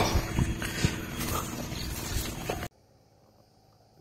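Irregular rustling with scattered light knocks as a freshly shot green pigeon is handled. The sound cuts off suddenly a little over halfway through, leaving near silence.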